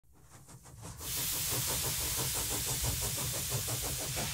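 A steam engine running with a quick, even beat over a steady hiss of steam, fading up over the first second and then holding steady.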